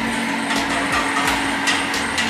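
A wire whisk stirring thin batter in a stainless steel bowl, giving a few light clicks over a steady hiss and low hum of kitchen background noise.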